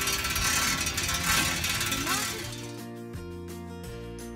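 Rushing wind on the microphone of a moving pedal bike, with background music underneath and a brief voice. About two and a half seconds in the rushing stops and only the background music continues.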